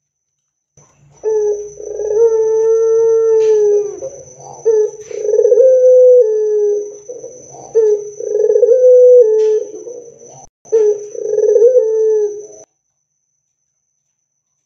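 A Barbary dove (domestic ring-necked dove) cooing loudly: four long, drawn-out coos, each led by a short note, at a low, steady pitch that steps up slightly partway through.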